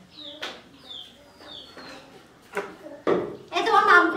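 Short falling bird chirps about once a second, with a few sharp clinks of utensils on steel bowls. A person's voice starts about three seconds in and is the loudest sound.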